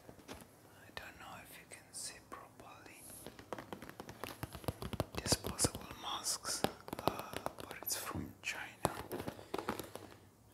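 Fingertips and nails tapping quickly on a cardboard box of disposable face masks, many light taps close to the microphone, with soft whispering in between.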